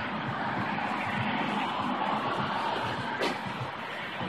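Steady background noise with a single brief click about three seconds in.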